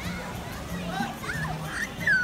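Children shouting and calling out with high, rising and falling voices over music with a steady, stepping bass line.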